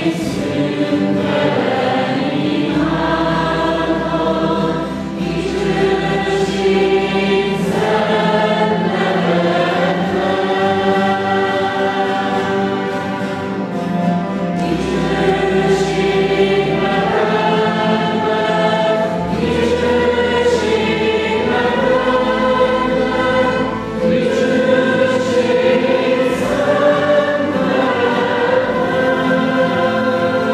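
A church hymn sung by a group of voices, accompanied by strummed acoustic guitars and a cello.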